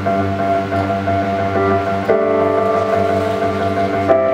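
Acoustic folk-rock band playing an instrumental passage without vocals: strummed acoustic guitars and banjo over held keyboard chords, with a new sustained chord coming in about two seconds in.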